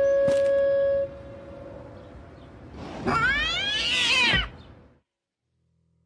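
A held woodwind note fades out about a second in; then, about three seconds in, a loud animal-like vocal cry that rises and falls in pitch over about a second and a half, cutting off into silence.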